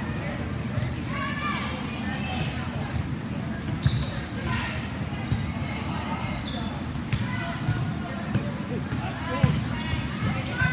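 A volleyball being struck by hand and smacking onto a hard gym floor, echoing around a large hall, over indistinct background voices. The two sharpest hits come about four seconds in and just before the end.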